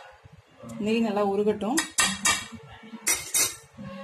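A metal spoon tapping and scraping against a nonstick frying pan as ghee is knocked off it into the pan. There are several sharp clinks in the second half.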